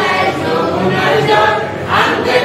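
Several voices singing together without instruments, holding long sung notes in a Bengali folk song of the patua scroll painters.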